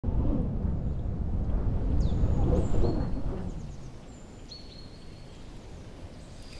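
Outdoor nature ambience: a low rumble that fades away after about three and a half seconds, with a few thin, high bird whistles, some sliding down in pitch.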